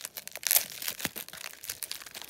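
Crumpled newspaper packing crinkling and crackling as it is handled in a cardboard parcel box, a string of short crackles with the loudest about half a second in.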